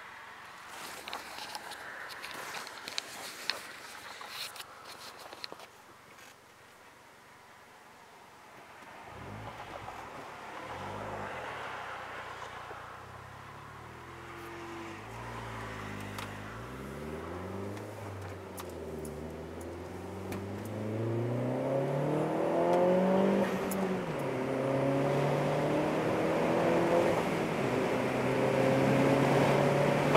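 Chevrolet Sonic RS's turbocharged 1.4-litre four-cylinder engine under hard acceleration, heard inside the cabin. After a few quiet seconds the engine note climbs in pitch, drops back at each gear change and climbs again, getting louder, on a full-throttle pull testing the new ported intake manifold.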